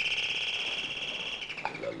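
A doorbell giving one long, steady, high ring that sags slightly in pitch as it dies away near the end.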